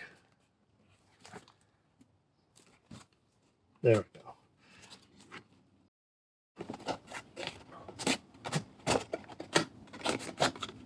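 Cardboard box handled and its inner box slid out of a snug sleeve: a few faint rustles, then from about two-thirds in a quick run of scrapes and rubs as the card slides against card.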